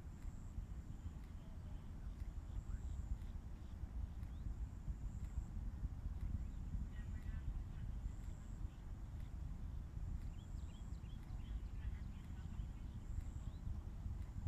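Low, steady rumble, with faint high chirps here and there.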